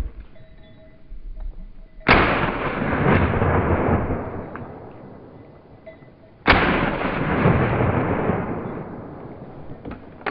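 Two shotgun shots about four seconds apart, each followed by a long rolling echo that fades over several seconds.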